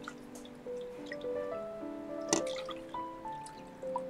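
Milk pouring from a measuring jug into a glass baking dish, heard as scattered splashes and drips, with one sharper splash a little past halfway. Background music of slow held notes plays throughout.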